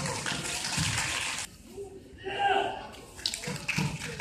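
A rushing hiss for about a second and a half, then a voice calling out about two seconds in, and a few soft thumps near the end, like bodies landing on the mats.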